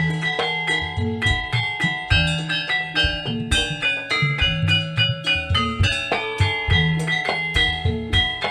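Javanese gamelan music for a traditional dance: quick runs of struck metallophone notes over a steady beat of low drum strokes, about one a second.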